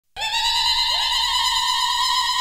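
The opening of a song: a lead instrument holds a single high note, sliding up into it at the start and swooping up again about a second in.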